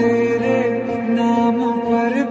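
Background music: a wavering melodic line over a steady drone.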